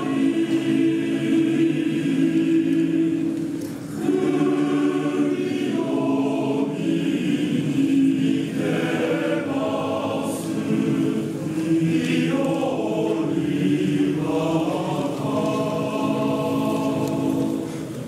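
Male choir singing in harmony, holding long chords, with a brief break between phrases about four seconds in.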